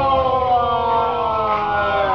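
Men's voices holding one long drawn-out sung note in a rugby drinking song, the pitch sliding slowly down. The crowd noise of the bar is underneath.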